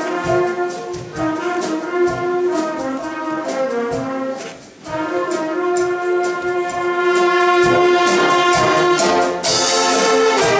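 Large student ensemble of brass and wind instruments with percussion, playing sustained chords over steady percussion strokes. The music thins to a brief near-break a little before halfway, then comes back fuller and louder for the last few seconds.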